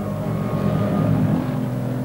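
A tank's engine and tracks rumbling as it drives past, swelling to its loudest about a second in.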